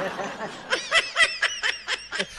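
A person laughing: a run of quick, high-pitched laughs that starts just under a second in.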